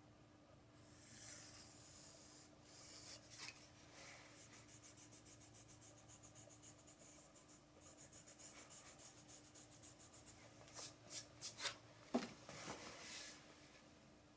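A pencil drawing along a ruler on bare sanded wood: faint runs of quick, repeated scratching strokes. Near the end come a few light knocks and clicks.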